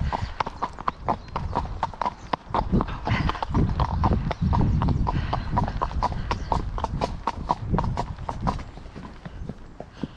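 A horse's hooves striking a gravel track, steady hoofbeats about four a second.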